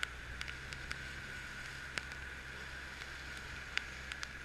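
Steady low hum of a motorboat's engine running under way, mixed with wind and water noise and a few faint ticks.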